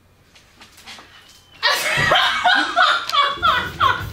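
Faint room noise, then about a second and a half in, loud laughter breaks out and carries on in pulses.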